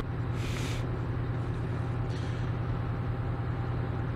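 Steady low hum of idling vehicle engines at a roadside. Two short hisses come through it, about half a second in and about two seconds in.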